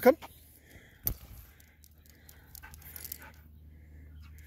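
A man's voice calls "come!", then a sharp click about a second in, followed by faint rattles and scuffs from the long dog leash and its clips as a husky runs back on it.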